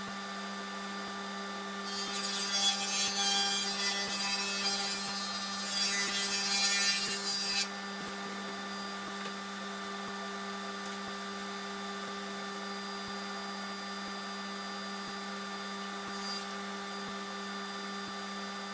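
Table saw running with a steady hum; about two seconds in the blade cuts through a reclaimed wood plank for nearly six seconds, and the cutting noise stops abruptly.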